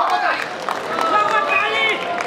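Speech over a public-address system: a voice talking, with a few faint clicks.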